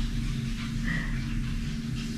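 Steady low hum of a ceiling fan running, with a faint short high sound about a second in.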